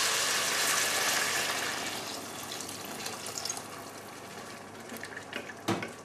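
A stream of water pouring into a pot of frying red lentils and vegetables, with a loud, even rushing hiss that tapers off after about two seconds to a quieter hiss. A single knock near the end.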